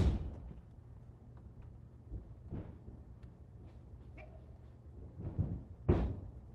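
Aikido throws and takedowns on a padded mat: the tail of a heavy body thud as it opens, a few soft footfalls and fabric rustles, then a short cluster of impacts and a sharp thud near the end as the partner is taken to the mat and pinned.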